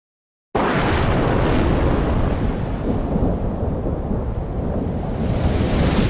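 Thunderstorm sound effect: a deep, loud rumble of thunder over a hiss like rain, starting suddenly about half a second in and swelling again near the end.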